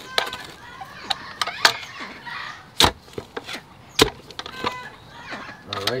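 Two-handled clamshell post-hole digger with steel blades being jabbed into mulch-covered soil while digging a hole: a series of sharp chopping strikes, the two loudest about three and four seconds in, with crunching of mulch and dirt between.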